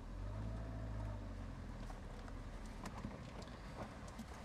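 MGF's mid-mounted four-cylinder engine running at low speed as the car pulls slowly away, a steady low hum heard from the open cockpit.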